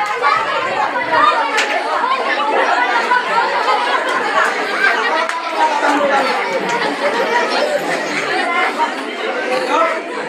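Several people talking at once, their voices overlapping into an indistinct chatter.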